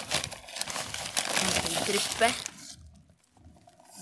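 Close rustling and crinkling from hands working around the sapling and pot, with a few short spoken words; it dies down near the end.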